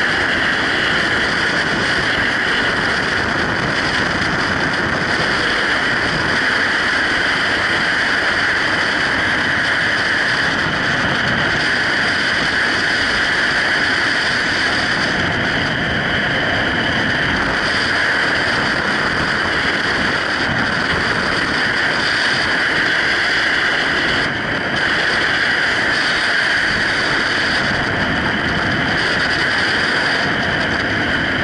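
Loud, steady rush of freefall wind buffeting a skydiver's camera microphone, with a brief dip in level about four-fifths of the way through.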